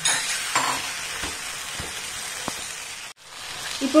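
Raw chicken pieces and masala sizzling in a frying pan while being stirred with a wooden spatula, with a few light scrapes of the spatula against the pan. The sound cuts out briefly about three seconds in.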